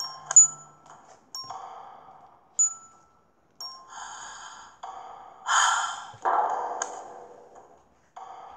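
Animated storybook sound effects: a few short, high bell-like pings, and a run of breathy sighing sounds. The two loudest sighs come in the second half.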